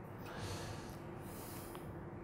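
A man breathing out through his nose close to a clip-on microphone, two soft breaths, over a faint steady hum. A single faint click near the end, a laptop key being pressed.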